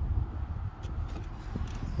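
Seatbelt presenter arm of a 2013 Mercedes-Benz E350 convertible extending forward to hand over the belt: a faint motorised slide under a steady low rumble, with a few light clicks near the end.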